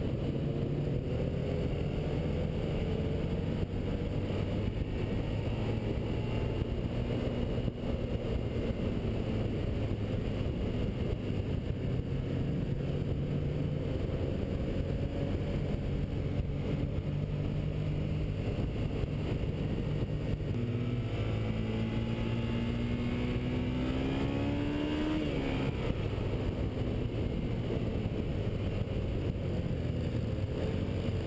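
Sport bike engine running at speed under a steady rush of wind and road noise, heard from the bike itself; about three-quarters of the way through the engine pitch climbs as it accelerates, then drops away.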